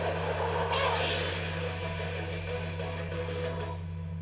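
Anime episode sound played back: a rushing whoosh of wind rises about a second in and cuts off sharply near the end, over a steady low electrical hum.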